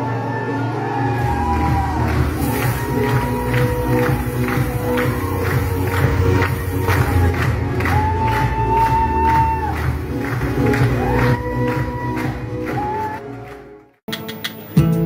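Show music with a steady beat, strong bass and a high melody line, over the noise of an audience; it fades out just before the end.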